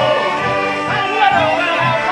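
Folk street band playing live: a small button accordion holds steady chords while a voice sings over it and hand drums keep a steady beat.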